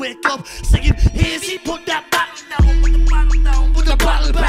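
Live hip hop: rapping into a microphone over a backing beat. For the first two and a half seconds the beat is stripped back to sparse drum hits, then a heavy deep bass drops back in and holds.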